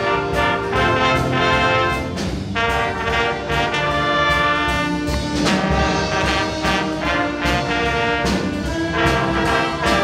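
Middle-school jazz band playing live: trumpets, trombones and saxophones sounding together in held chords over a steady beat.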